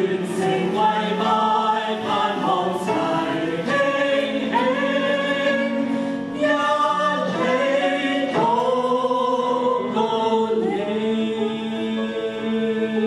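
Mixed male and female voices singing a Mandarin worship song in harmony through microphones, holding long notes, over a steady sustained low accompaniment note.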